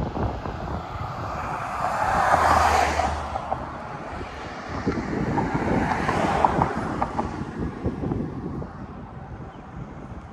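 Wind buffeting the microphone during a bicycle ride, with road traffic passing close by: two vehicles swell up and fade away, the first about two and a half seconds in and the second around six seconds.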